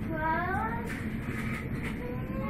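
Steady rumble of a VIRM double-deck electric train running, heard inside the carriage. Just after the start, a short, high, rising cry like a meow rises above it, with a fainter one about a second later.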